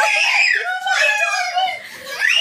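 Young children screaming and shrieking in play: two long, high-pitched cries overlapping with child voices, fading near the end.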